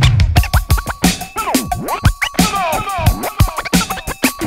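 Hip hop track's scratch break: DJ turntable scratching, a record pushed back and forth in quick strokes so its pitch sweeps up and down, over a drum beat with a deep bass hit at the start.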